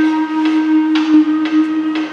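An amplified upright string instrument being plucked, with single notes struck about twice a second and left to ring, over a steady low drone.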